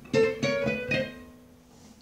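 Acoustic guitar playing a quick phrase of plucked and strummed notes in the first second. The last chord then rings out and fades away.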